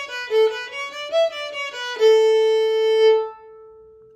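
Solo violin playing a fast up-and-down scale on the A string, open string up to the fourth finger and back (0-1-2-3-4), the notes changing several times a second. About two seconds in it settles on a long held open A that stops just past three seconds and rings away.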